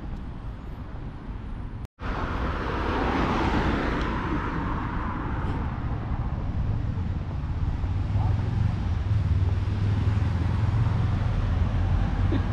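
Street traffic: a passing car's tyre and engine noise swells and fades over a few seconds, then a steady low rumble of traffic builds. The sound cuts out completely for a split second about two seconds in.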